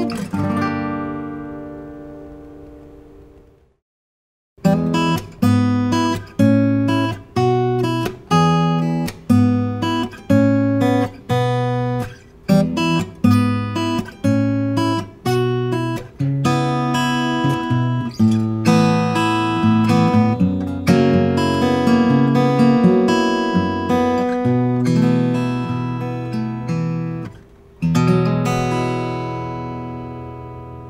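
Taylor 914ce acoustic guitar, with a solid Sitka spruce top and Indian rosewood back and sides, played unplugged. A chord rings and fades to silence in the first few seconds. Then a fingerpicked passage of plucked notes and chords in a steady pulse begins, ending with a chord struck near the end that rings and fades.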